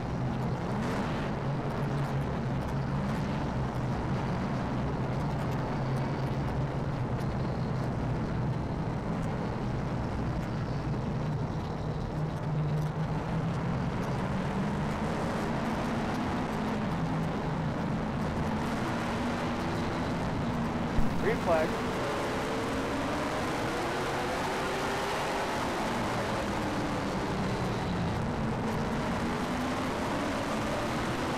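In-car sound of a late model stock car's V8 running at low speed on a pace lap under caution, a steady low drone. About two-thirds of the way through there is a short loud burst, and then the engine note rises and falls as it is revved.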